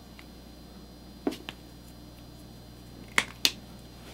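Small, sharp plastic clicks from handling a micropipette, which ends with the used tip being ejected into a plastic box. There are four clicks in two pairs, the first pair about a second in and the second near the end.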